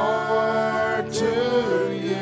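Live worship song: voices singing long held notes over band accompaniment.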